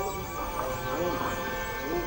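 Background music with long held notes over a market street's ambience: indistinct crowd voices and horses' hooves clip-clopping.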